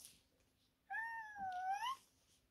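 One high-pitched drawn-out vocal call lasting about a second, starting about a second in, dipping slightly and rising in pitch at the end.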